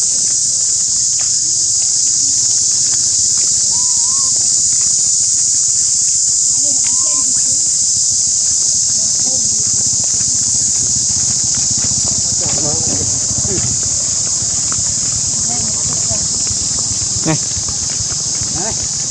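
Loud, steady high-pitched insect chorus drowning the scene, with a few short rising-and-falling calls and indistinct voices underneath.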